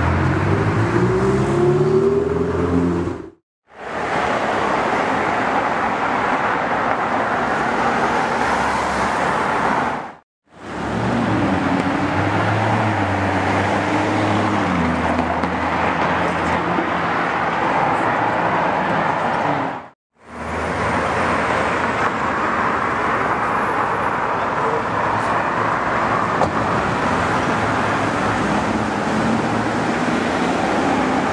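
Ferrari 488's twin-turbo V8 rising in pitch as it accelerates away, over city traffic noise. After a brief cut to silence, a Lamborghini Urus's twin-turbo V8 pulls away with a gear change partway through. The rest is steady street traffic, broken by two more short silences.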